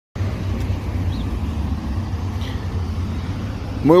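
Steady low rumble of road traffic on the avenue beside the path.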